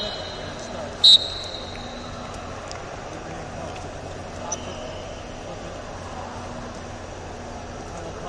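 Referee's whistle: one short, sharp, high-pitched blast about a second in, signalling the start of the wrestling bout, over a steady background of voices in a large hall.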